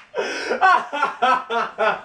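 Laughter in a run of short 'ha' bursts, about six in two seconds.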